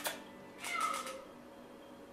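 A sharp click right at the start, then a long-haired cat meows once, briefly, its pitch falling.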